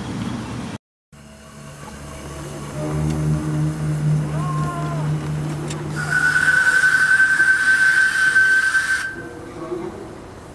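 Live-steam miniature locomotive's whistle blowing one steady high note for about three seconds, starting about six seconds in, with a hiss of steam over it. Before it comes a steady low hum of the miniature train running.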